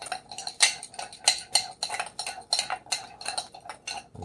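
A metal fork stirring powdered spice rub in a small ceramic bowl: irregular clinks and light scrapes against the bowl, about three a second.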